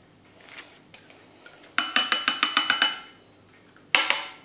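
A run of about a dozen quick taps, about ten a second, making a glass mixing bowl ring as a yogurt pot is emptied into it, then one sharp knock on the bowl near the end.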